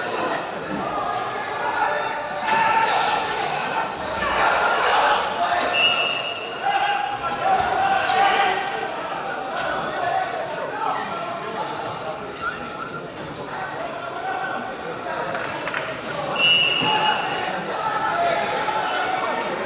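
Indistinct voices calling out in a large, echoing hall, with dull thuds of wrestlers' feet and bodies on the mat.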